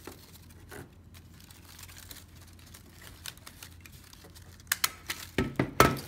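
Scrapbook paper rustling as a paper snowflake is handled, then a handheld stapler clacking through the paper, with a few sharp clicks and two loud strokes near the end.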